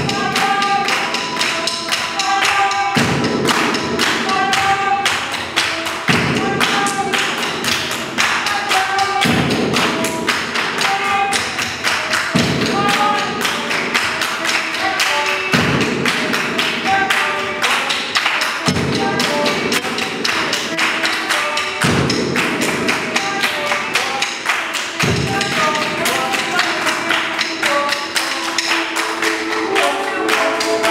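Live percussive group music: hand claps and taps in a quick, steady rhythm with short pitched notes over them. A low swell comes back about every three seconds.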